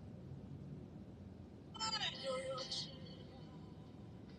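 A brief voice, about a second long, partway through, over a low steady rumble.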